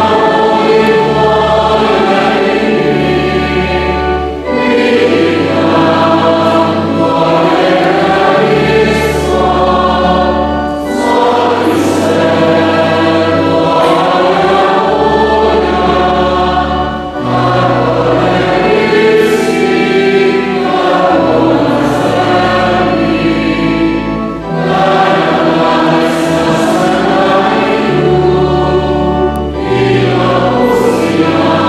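Choir singing sacred music in a church, in phrases of a few seconds with short breaks between, over sustained low accompanying notes.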